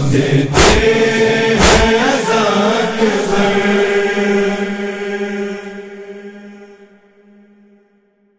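The closing of an Urdu noha, a Shia mourning chant: voices chanting with two sharp beats about a second apart, then a long held chanted note that fades out toward the end.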